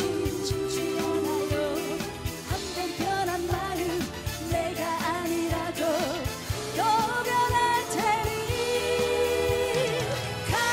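Live trot song: a woman sings a melody over a backing track with a steady dance beat.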